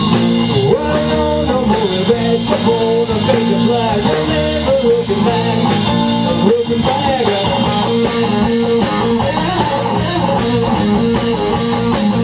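Live blues-rock power trio playing: electric guitar with bending notes over bass guitar and drum kit.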